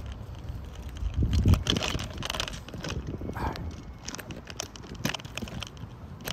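Irregular clicks, knocks and rustling of a phone being handled and fitted into a mount, right against its microphone, with a louder low rumble about a second and a half in.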